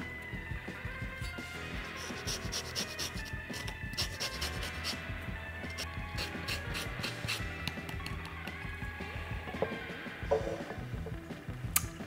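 A lime being zested on a fine rasp grater: a run of short scraping strokes of peel against the metal teeth, with quiet background music underneath.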